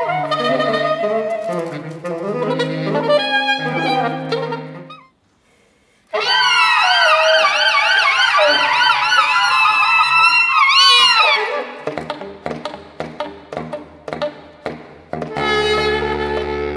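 Saxophone quartet playing: overlapping moving lines break off for about a second, then a loud held chord with wavering pitches swells and ends in an upward glide. Short percussive pops follow over low held notes, and a new full chord enters near the end.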